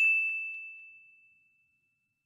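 A bell 'ding' sound effect: one bright, high, pure ring that fades away over about a second and a half.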